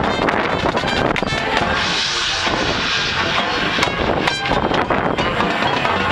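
High school marching band playing a concert piece: brass and woodwinds in full sound over drums, with a bright high wash swelling about two seconds in.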